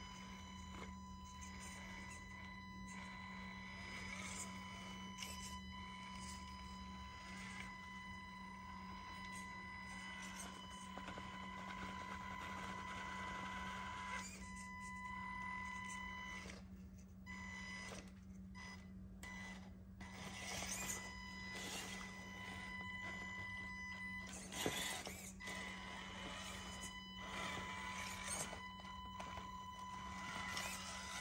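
Stock motor and ESC of an Axial Capra UTB18 RC crawler giving a constant high whine, one steady tone with overtones, as the truck crawls. The whine cuts out briefly a few times past the middle, with scattered light clicks.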